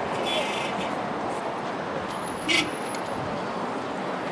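Busy roadside street noise: steady traffic rumble with the background voices of a crowd. A brief, sharp, louder sound comes about two and a half seconds in.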